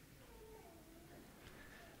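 Near silence: faint room tone, with a few faint gliding tones.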